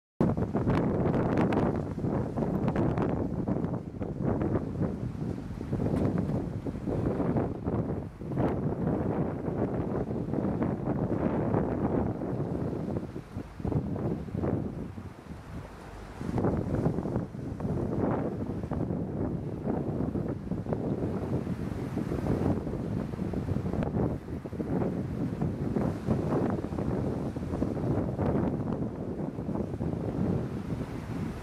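Wind buffeting the microphone in uneven gusts, easing briefly about halfway through.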